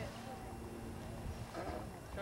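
Faint, distant voices of players and spectators at an outdoor baseball field over a steady low rumble, with a few voice fragments near the end; no bat or ball contact is heard.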